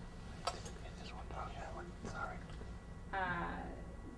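A speaker's hesitation pause: a click and faint, soft voice sounds, then a drawn-out spoken "uh" about three seconds in, over a steady room hum.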